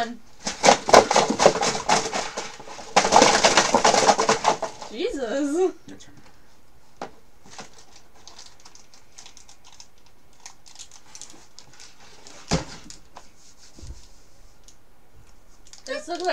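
Rustling and crinkling of a cardboard box and the snack packets inside it as the box is lifted and rummaged through, in two loud spells over the first five seconds. Then mostly quiet room with a few faint clicks and one sharp knock about three-quarters of the way through.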